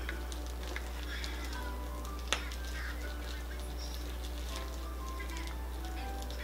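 Quiet background music over a steady low electrical hum, with a single sharp click a little over two seconds in.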